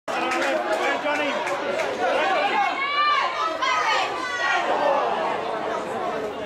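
Several people talking at once near the microphone, overlapping chatter with no clear words.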